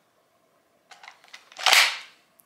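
Safariland QLS quick-locking fork and receiver plate being fitted together: a few light plastic clicks, then a louder brief clack near the end as the pieces lock.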